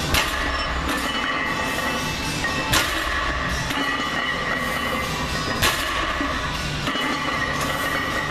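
Loaded barbell set down on the floor between deadlift reps: a sharp clank of the weight plates three times, about three seconds apart, over steady background music.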